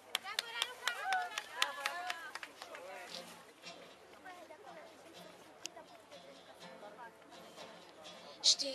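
Voices talking, with a run of sharp clicks and knocks in the first two seconds, then quieter murmuring voices.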